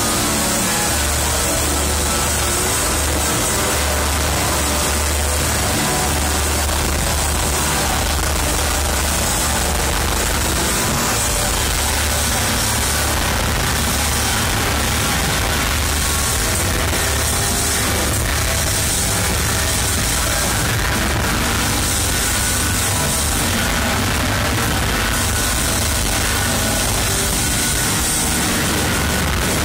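A live rock band playing loud and dense, with electric guitars, keyboards, bass and drums, no pauses.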